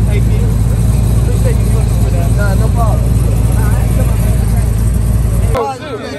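A car engine idling close by with a steady, deep rumble. It stops abruptly near the end.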